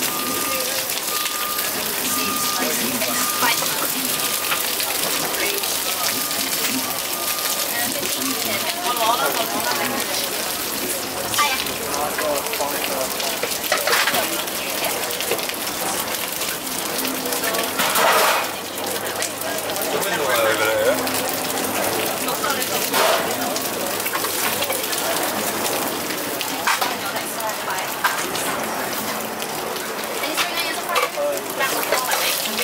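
Pan-fried dumplings sizzling steadily in oil in a large frying pan, with background voices. A short repeated beep sounds over the sizzle during roughly the first seven seconds.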